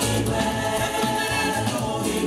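Music with a choir singing, the voices holding long, steady notes.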